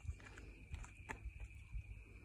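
Footsteps of a person and a dog walking down a hill on a lead: a few soft taps and scuffs over a low rumble, with a faint steady high tone underneath.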